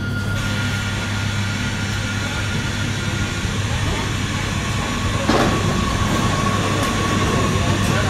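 Bombardier AGC bi-mode railcar pulling slowly into the platform, with a steady low drone and a thin high whine. About five seconds in there is a clank, and the whine comes back at a lower pitch.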